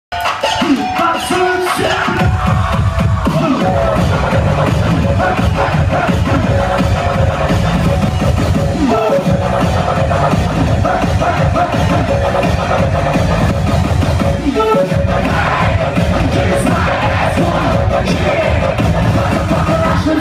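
Loud live electronic dance music with a heavy bass beat, played through a club's PA and heard from among the audience, with the crowd cheering over it. The beat drops out briefly twice, about 9 and 15 seconds in.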